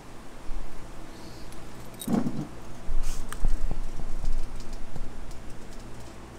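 Handling noise from a phone being turned around and carried: rubbing, low knocks and small clicks, busiest from about three seconds in, over a steady low hum.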